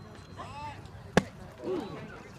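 A single sharp, loud smack of a baseball about a second in, with brief voices just before and after it.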